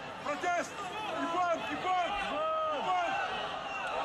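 Many voices calling and talking over one another in a large sports arena crowd, several at once, with no single clear speaker.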